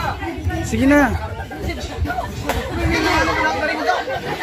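Several people's voices chattering and calling out over one another, with no music.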